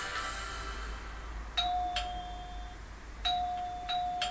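Doorbell chime ringing twice, about a second and a half apart, each ring a struck note held for about a second.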